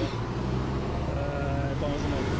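Steady low engine rumble of a coach bus idling close by, with faint voices over it.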